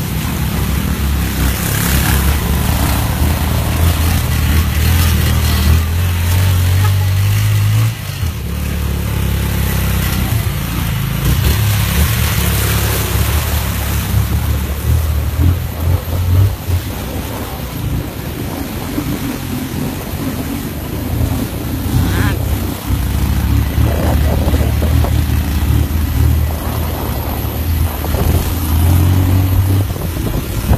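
A motorcycle engine running on a rough dirt road, with heavy wind rumble on the phone's microphone. The low rumble weakens and comes back a few times.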